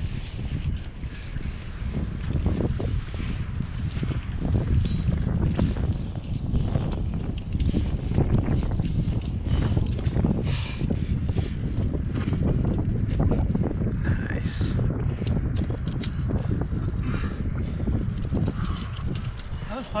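Metal climbing gear (carabiners and cams on a harness rack) clinking and rattling as a climber moves up a granite crack, with a cluster of sharper clinks about two-thirds of the way through. Under it runs a constant low rumble.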